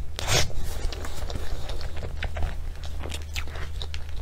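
Close-miked eating: wet mouth smacks and chewing of a soft cream cake topped with chocolate cookie crumbs, in an irregular run of short clicks, the loudest about a third of a second in. A steady low hum runs underneath.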